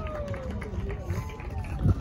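Voices shouting across a soccer field, one long call falling in pitch, over a low rumble, with a thump near the end.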